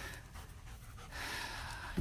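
A dog panting faintly, a little louder in the second half.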